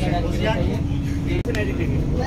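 Voices chattering inside a moving Vande Bharat Express train coach, over the train's steady low rumble and a constant hum. The sound breaks off for an instant about one and a half seconds in; after that the hum is slightly lower.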